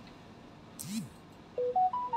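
A quick run of short electronic beeps about a second and a half in, three notes stepping up in pitch, preceded by a brief soft sound.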